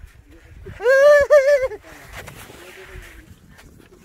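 A person lets out a loud, high-pitched wordless shout lasting about a second while sliding down a snow slope. It is followed by a fainter rushing scrape of snow.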